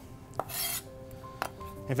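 Chef's knife cutting green bell pepper on a cutting board: two light knife taps about a second apart, with a brief scraping swish of the blade between them.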